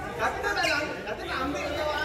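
Several people chatting in a large indoor sports hall, the voices overlapping.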